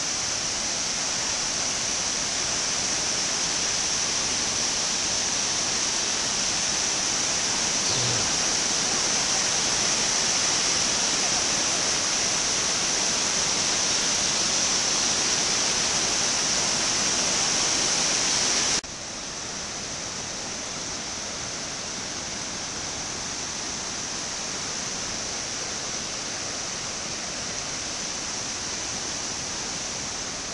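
Shallow cascades of water rushing over travertine terraces: a steady, full rush of white water that drops abruptly to a lower level about two-thirds of the way through.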